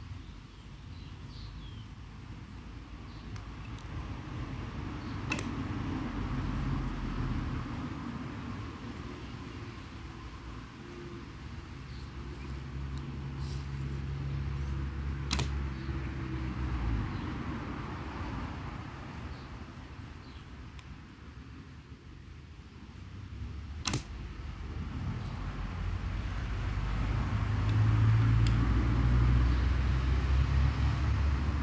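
Road traffic passing, a low rumble that swells and fades, with three sharp snaps of a bow being shot, about five, fifteen and twenty-four seconds in.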